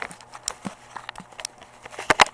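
Camera handling noise: soft, irregular clicks and knocks, a few a second, with no music playing.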